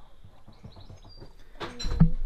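Mostly quiet, with a few faint, high bird-like chirps. About one and a half seconds in, there is a louder rustling bump with a low rumble, as an arm brushes close against the camera's microphone.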